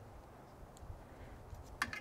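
Quiet handling noise, with a few faint clicks near the end, as gloved fingers work a rubber O-ring off a fuel injector's body.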